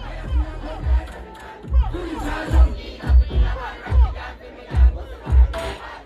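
Dancehall music on a loud sound system, a heavy bass beat thumping about every three-quarters of a second, under a crowd shouting and singing along.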